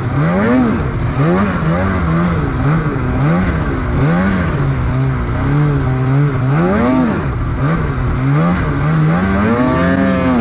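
Snowmobile engine revving up and down over and over as the throttle is worked through deep powder. The pitch climbs and drops about once a second, with one higher climb a few seconds before the end, then holds steadier and higher at the very end.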